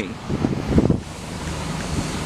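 Wind buffeting a handheld camera's microphone, gusting hardest in the first second, over a steady low hum.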